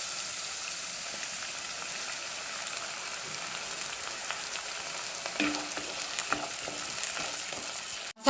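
Chopped onions sizzling steadily in hot oil in a pan, a continuous frying hiss. A few faint clicks come a little past the middle.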